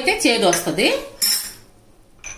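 A steel spoon scraping and knocking against a small stainless-steel bowl, the scrapes squealing with a wavering, gliding pitch, then a bright ringing clink a little over a second in.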